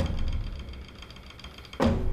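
Dramatic background score fading away after its drum-backed passage, leaving a low hum with faint steady high tones. A sudden louder sound comes near the end.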